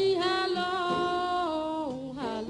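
A woman singing a blues song, holding one long note after the words "Tell me". The note stays level, then bends downward near the end.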